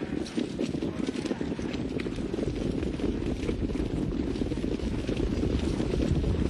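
Hoofbeats of a field of harness-racing pacers on the dirt track: a dense, continuous patter of many hooves behind the mobile starting gate, slowly getting a little louder.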